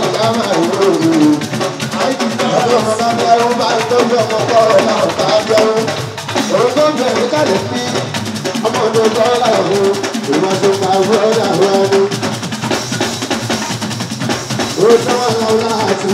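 Live fuji band music: a male lead singer singing through a microphone and PA over hand drums and percussion.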